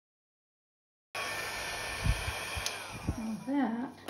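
A mini travel hair dryer runs steadily on its high, cool setting, with a faint whistle in its noise, blowing wet acrylic paint across the canvas in a Dutch pour. It cuts in suddenly about a second in. Near the end a short voiced sound, rising and falling in pitch, rides over it.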